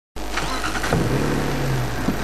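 Safari game-drive vehicle's engine idling with a steady low hum.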